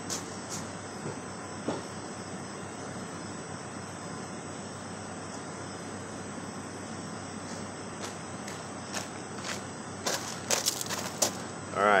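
Steady background noise, like a low outdoor hum, with a few short clicks and knocks, most of them near the end.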